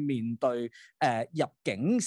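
Speech only: a person talking, with two short pauses.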